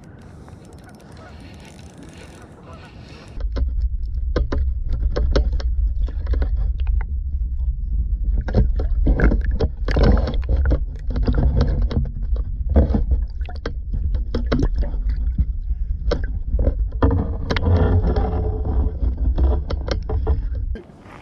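A camera submerged in pond water from about three seconds in: a deep, muffled rumble of water moving against the housing, with frequent irregular knocks and clicks.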